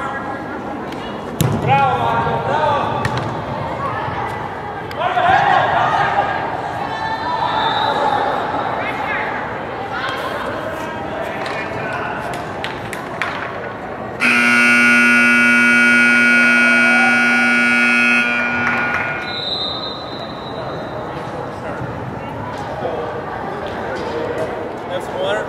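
Voices calling out across an indoor soccer field, with a few sharp knocks. About 14 seconds in, the scoreboard buzzer sounds one long, steady tone for about four seconds, marking the end of the first half.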